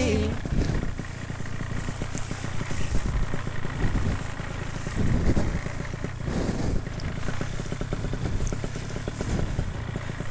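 Paramotor engine running as the wing is pulled up overhead for launch, with wind buffeting the microphone.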